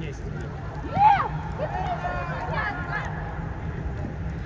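Short shouted calls across an indoor football pitch, the loudest about a second in, with rising-and-falling pitch and a few more calls following, over a steady low hum.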